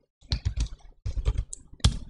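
Typing on a computer keyboard: a quick, irregular run of key clicks, with one louder keystroke near the end.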